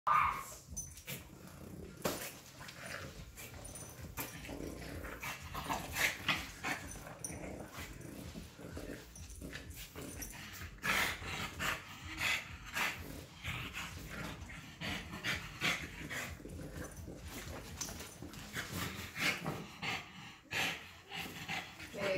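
A French Bulldog and a Boston Terrier puppy play-wrestling, making dog noises mixed with scuffling in short, irregular bursts throughout.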